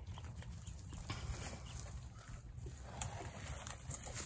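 Soft rustling and a few light clicks as a backpack's straps and webbing are cinched tight around a stick in a tree, with one sharper click about three seconds in, over a steady low rumble.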